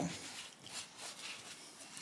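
Faint rubbing of a paper shop towel, wet with potassium silicate, being wiped over a bare wooden guitar headstock.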